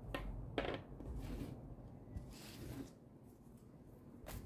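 Faint handling noises: two light knocks near the start, then soft rustles as a deck of cards is picked up and handled.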